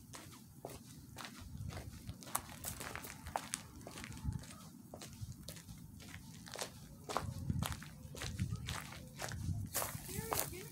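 Footsteps walking over debris and dry dirt ground, with scattered sharp ticks and irregular low thumps as the feet land.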